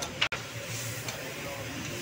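Steady background noise, typical of a street setting with traffic, with one sharp click and a momentary dropout about a quarter second in.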